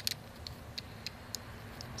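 A few faint, sparse metallic clicks from the loose blade of a folding pocket knife being wiggled in its handle; the blade plays loose because the knife has been taken apart.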